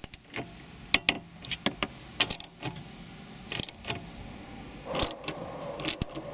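Small ratchet with a socket extension turning a head unit mounting bolt: scattered metal clicks and clinks in short bunches as the tool is worked and repositioned.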